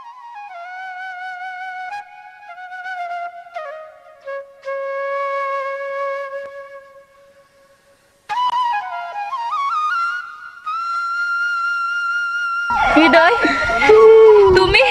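Background music: a slow solo flute melody in long held, gliding notes. It pauses briefly about seven seconds in, then resumes on a higher held note. Near the end a loud voice breaks in over it.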